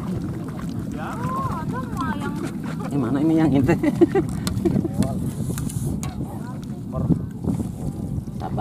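Indistinct voices of people talking, loudest in the middle, over a steady low background noise.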